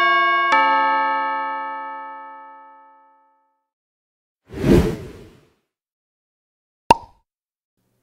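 Editing sound effects for a title-card transition: a two-note electronic chime, the second note about half a second after the first, ringing out over about three seconds. About four and a half seconds in comes a short whoosh, and near the end a brief pop.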